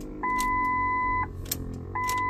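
Electronic warning beep sounding twice: a steady mid-pitched tone about a second long each time, with a short gap between, as the ignition key is cycled.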